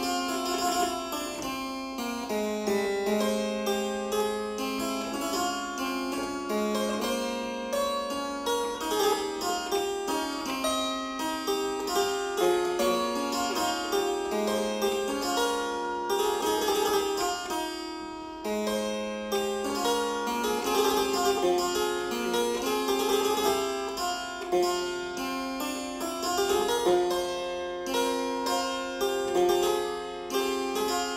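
A 1738 Ioannes Gorman harpsichord from Paris, tuned low at A=398 Hz, playing an improvisation: a steady stream of plucked notes and broken chords in the middle and upper range, with no deep bass.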